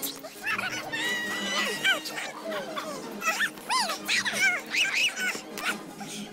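A woman's moans and cries, sped up so that they come out as a quick run of high, squeaky rising-and-falling yelps, over background music.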